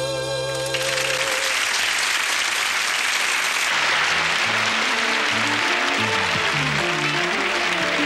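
A held final chord ends in the first second and a studio audience applauds. About halfway in, a band starts playing under the applause: a walking bass line with other instruments joining, as the next number begins.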